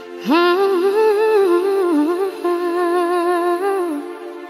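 Pop ballad: a female voice slides up into a long, held sung line with small bends in pitch, over sustained backing chords.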